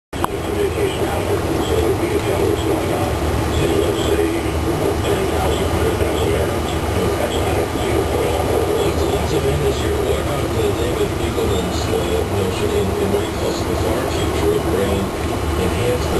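Steady, continuous running noise of aquarium equipment in a fish room, the hum and bubbling of air pumps and filters, with no breaks or distinct events.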